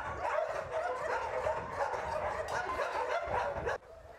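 A crowd of kennelled dogs barking and yelping over one another in a continuous din, which cuts off suddenly near the end.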